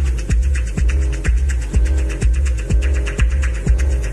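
Deep, hypnotic techno: a steady four-on-the-floor kick drum a little more than twice a second under a droning bass, with hi-hats ticking high above.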